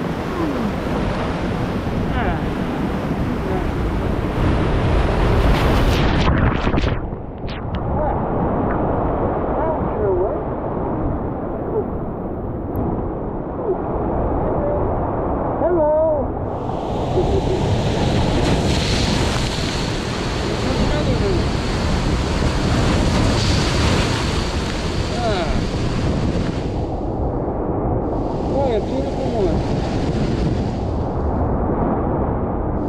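Ocean surf breaking and washing over rocks, a steady rush of noise, with wind buffeting the microphone.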